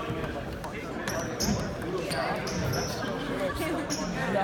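A basketball bouncing a few times on a gym's hardwood floor, with short high squeaks in between and voices carrying in the echoing hall.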